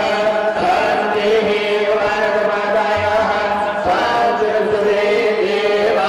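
Male voices chanting a Sanskrit mantra in long held notes, the pitch shifting about half a second in and again near four seconds.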